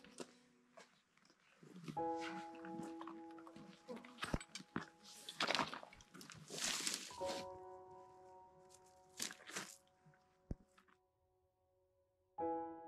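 Background music of slow, held keyboard chords that change a couple of times, over rustling and crunching steps on a rocky path, with a few loud swishes of pack and rain-gear fabric. The music stops shortly before the end.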